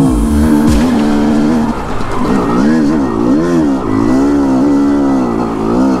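2005 Yamaha YZ250 single-cylinder two-stroke dirt bike engine under load on a steep trail climb. The revs rise and fall over and over as the throttle is worked, with wind rumble on the microphone in the first second.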